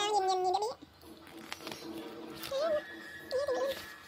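Baby vocalizing: a drawn-out 'aah' at the start that rises at its end, then two short wavering coos in the second half.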